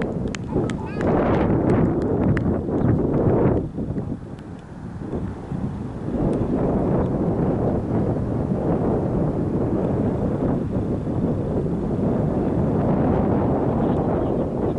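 Wind buffeting the camera microphone in a steady low rumble, with indistinct distant voices in the first few seconds.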